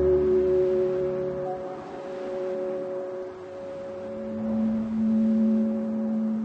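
Background music: slow, sustained synthesizer chord tones held steady, with a new lower note coming in about four seconds in.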